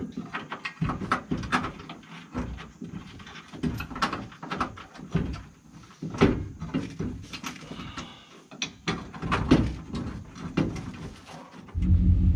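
Irregular metal clanks, knocks and scrapes from tools and parts being worked on under a car's stripped front end, mixed with a few short grunts or mumbled sounds from the men doing it.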